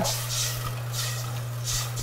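Stock sizzling and bubbling in a hot stainless pot of seared bacon and wild rice while a silicone spatula stirs it, the hiss swelling with each stroke. A steady low hum runs underneath.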